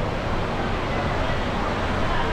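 Steady rushing water, with indistinct voices faintly mixed in.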